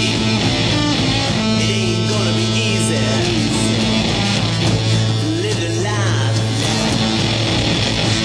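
Psychedelic rock band playing a loud, steady instrumental stretch between sung lines, led by electric guitar.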